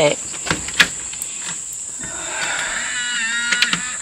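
Steady high-pitched drone of insects calling in the trees, with a couple of sharp taps in the first second and a brief high vocal sound near the end.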